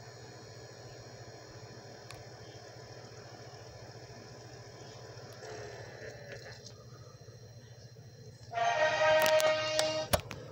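A steady low hum. Then, about eight and a half seconds in, a loud sustained horn-like chord plays for about a second and a half, with a few sharp clicks, and cuts off suddenly.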